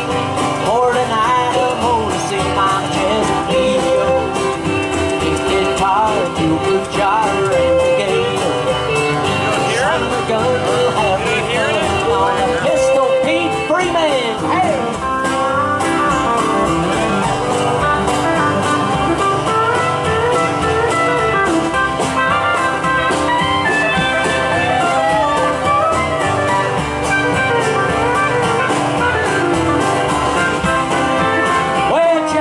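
Live country band playing an instrumental break with acoustic guitar, upright bass and drums, under a lead line that slides and bends in pitch, typical of a pedal steel guitar solo.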